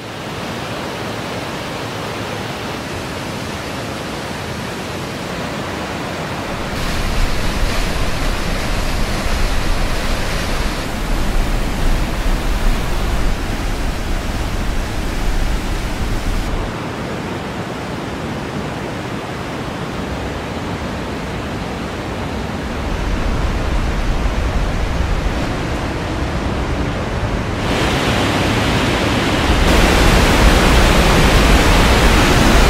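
Glacial meltwater torrent rushing and falling through a narrow rock gorge: a loud, steady water noise whose level jumps up and down abruptly a few times.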